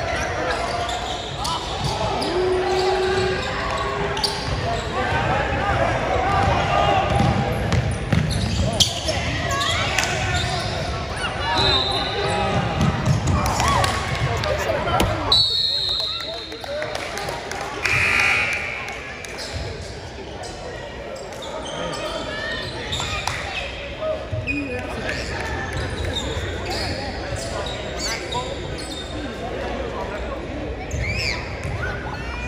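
Basketball being dribbled and bouncing on a hardwood gym court, a run of sharp thuds over indistinct voices of players and onlookers.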